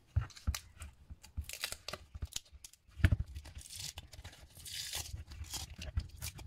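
Tape being peeled off a cast block of epoxy resin and wood, crackling and clicking as it lifts, with two longer ripping pulls in the second half and a thump from handling the block about three seconds in.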